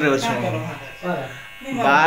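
A man talking, with the buzz of an electric hair clipper underneath; the voice drops away briefly about a second in.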